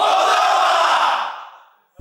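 A team of men shouting together in a rallying cry: one long, loud group shout that fades out about a second and a half in.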